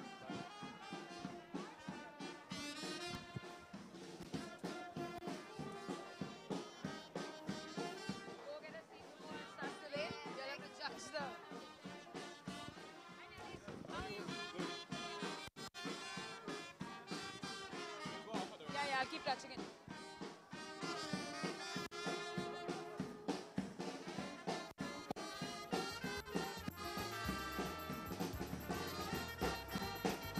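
Goan brass band playing a tune: trumpets carry the melody over a steady bass drum beat.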